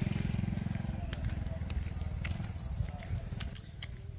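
A motorcycle engine's low, evenly pulsing rumble, fading steadily as the bike rides away.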